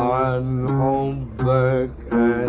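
A man singing three long held notes with a wavering pitch, a wordless melismatic passage of an Egyptian sung poem.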